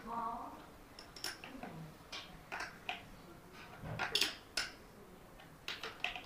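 Pliers clicking and scraping on a lead-acid battery's terminal clamp: a string of small, irregular metal clicks, a few sharper ones about four seconds in and near the end.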